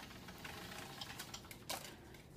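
Faint scattered clicks and ticks of a phone being handled while it films, fingers and grip moving on the phone close to its microphone.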